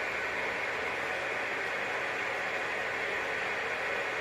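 Steady hiss of an open radio receiver on a frequency with no signal, played through the speaker while the other station has not yet come back.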